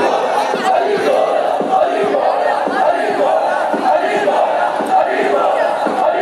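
Large crowd chanting and shouting together, loud and continuous, many voices overlapping.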